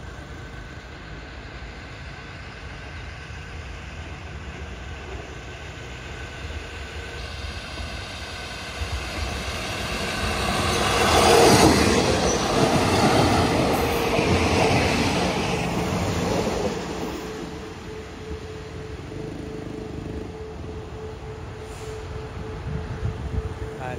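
Passenger train passing close by on the rails: a low rumble builds as it approaches, the wheels on the track are loudest about eleven to fifteen seconds in, then it fades as the train moves away.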